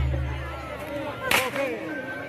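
A single sharp whip crack about a second and a half in, over faint crowd voices, as the low percussion music dies away early on.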